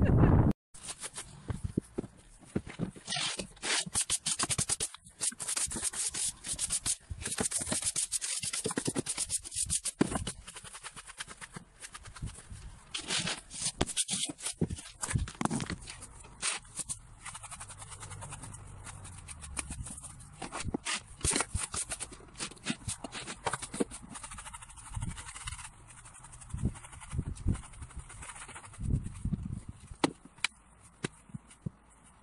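Hand brush sweeping the carpeted floor of a camper van in quick, irregular scratchy strokes, with short breaks between bursts of strokes.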